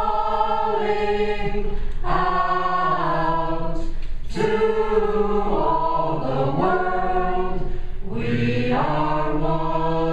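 Mixed choir of men's and women's voices singing a cappella in long held chords, with new phrases starting about two, four and eight seconds in.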